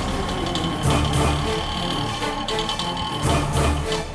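Background music with a low bass beat and held high notes.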